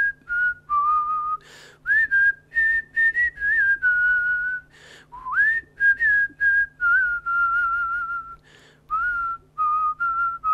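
A person whistling a slow melody in held single notes, some scooped up into pitch. A breath is drawn in between phrases, over a steady low hum.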